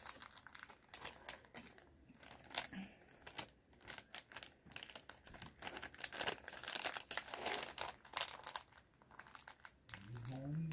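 Plastic MRE beverage bag crinkling in the hands in irregular crackles and clicks while freeze-dried instant coffee is put into it.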